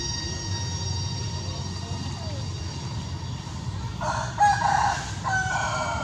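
A rooster crowing once, about four seconds in, for nearly two seconds, over a steady low rumble.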